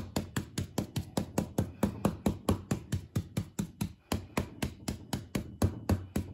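Stencil brush pounced hard through a 10 mil mylar stencil onto a fabric pillow case: a rapid, even run of dabbing taps, about six a second. The brush is loaded lightly and struck firmly.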